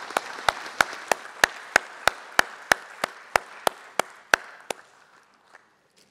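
Audience applause, with a loud, regular series of sharp claps about three a second standing out on top of it; it all dies away about five seconds in.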